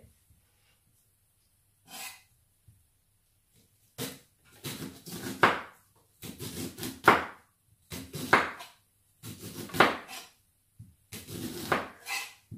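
Sharp kitchen knife scraping kernels off fresh corn cobs. After a few quiet seconds comes a run of about six scraping strokes, each roughly a second long and loudest at its end.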